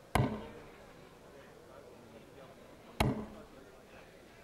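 Two sharp knocks about three seconds apart: steel-tipped darts striking a Winmau bristle dartboard.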